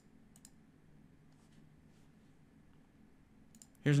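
A few faint, sharp clicks, a cluster just after the start and another near the end, over a faint steady low hum; a man's voice begins right at the end.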